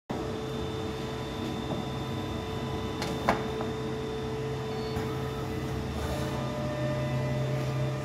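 Horizon HT-30 three-knife book trimmer running with a steady hum, with one sharp clack a little over three seconds in and a lighter click about two seconds later.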